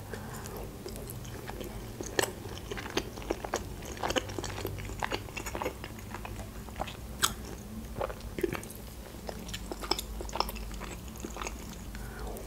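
Close-miked chewing of a sushi roll: a steady run of small, irregular mouth clicks at a fairly low level.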